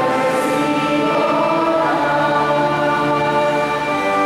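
Church choir singing a hymn in long, steadily held chords.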